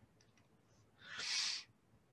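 A single short breathy hiss about a second in, lasting about half a second, swelling and fading: a person breathing near the microphone.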